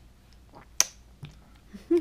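Baby's mouth smacking wetly on pea puree: a few sharp clicks, the loudest a little under a second in, then a short voiced sound near the end.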